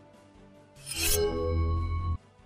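News-bulletin transition sting between stories: a swoosh about a second in, then a held musical tone with deep bass that cuts off abruptly at the end.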